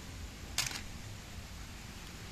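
A brief clatter about half a second in: a toy car dropped into a plastic basket among other toy cars.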